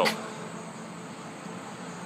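Steady outdoor background: an even hiss with a faint, continuous high-pitched tone.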